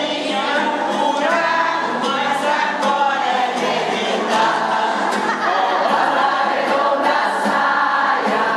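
A choir of older women singing a folk song together, with continuous voices that do not pause.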